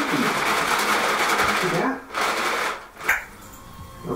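Dry cat food rattling as its container is shaken, in two bursts: one of about two seconds, then a shorter one, followed by a single sharp click.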